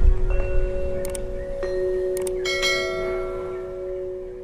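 Subscribe-button animation sound effects: a few sharp mouse clicks about one and two seconds in, over a ringing bell chime with several held tones that slowly fade.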